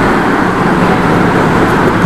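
A steady, loud rushing noise with no speech over it.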